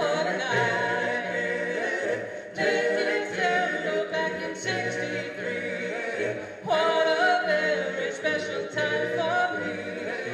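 Five-man male a cappella group singing in close harmony into microphones, with no instruments. The singing comes in phrases with brief breaks about two and a half and seven seconds in.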